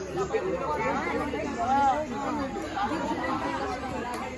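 Chatter of a group of people talking over one another.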